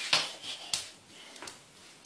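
A few light, sharp taps, the sharpest one under a second in.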